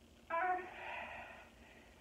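A woman's short voiced breath out, a brief "hah" about a third of a second in that trails into about a second of breathy exhale, the sound of effort while holding a kneeling side leg lift.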